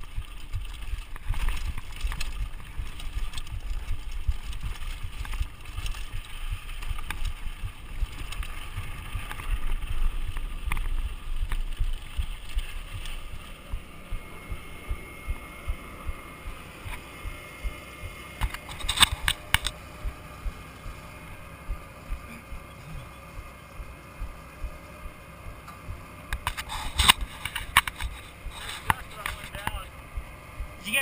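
A mountain bike riding down a rough dirt trail: the rumble and rattle of the bike over the ground, with wind buffeting the camera microphone. This eases off a little before halfway as the bike comes to a stop. After that it is quieter, with repeated sharp clicks about twice a second and two short bursts of louder clatter.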